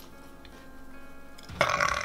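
A man lets out a short, loud burp about a second and a half in, over quiet background music.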